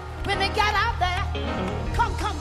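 Live gospel band music with a steady, bass-heavy groove. In the first second a high melodic line with a strongly wavering pitch rises over it, and it returns briefly near the end.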